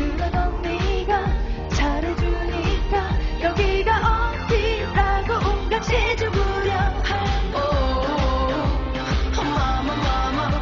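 Korean pop song: a woman's lead vocal sung in Korean over a pop backing track with a steady beat.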